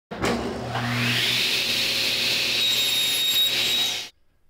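A power tool's motor spinning up, its whine rising over the first second and a half and then running steady, with a thin high tone joining near the end before it cuts off suddenly.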